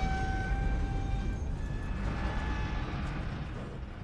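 Film soundtrack from a tense movie scene: a steady low rumble with a few faint, held high notes over it that fade out in the first part.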